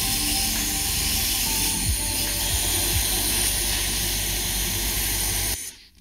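Pressure-washer jet blasting water onto a graphics card: a loud, steady hiss of spray over a low rumble, cutting off suddenly near the end.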